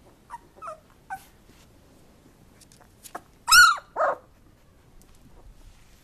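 An 18-day-old British Labrador retriever puppy whimpering. Three short squeaks come in the first second or so. About three and a half seconds in there is a loud cry that rises and falls in pitch, followed at once by a shorter, lower one.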